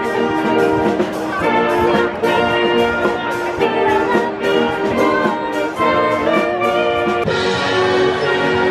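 Uniformed brass band playing outdoors: held brass chords and melody over a steady beat of about two strokes a second.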